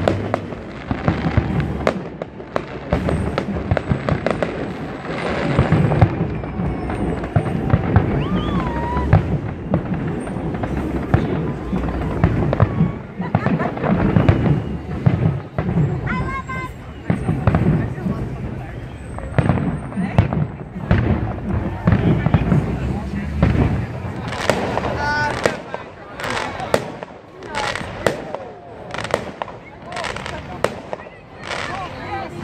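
Fireworks display going off: a dense, continuous run of bangs and crackling, thinning to separate, spaced bangs near the end.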